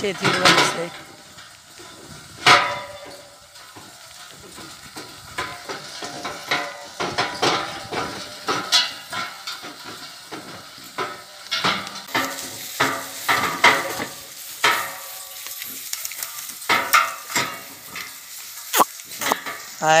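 Bullock cart drawn by a pair of bullocks rolling over a rough dirt track: an irregular clatter of knocks, rattles and creaks from the cart and its wooden yoke.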